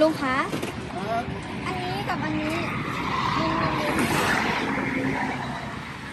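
A vehicle passing on the road, its tyre and road noise swelling and fading about three to five seconds in, with people talking over it.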